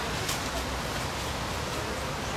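Steady outdoor background noise in a city park, with faint indistinct voices and a few light high ticks early on.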